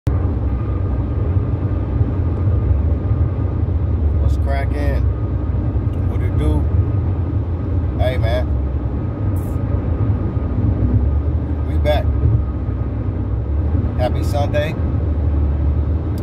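Steady low road and engine rumble inside a moving car's cabin, broken by a few short bursts of a man's voice.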